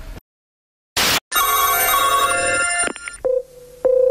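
A telephone bell ringing for about a second and a half, after a short burst of noise. Near the end a brief beep and then a steady single-pitch telephone line tone as the next call is placed.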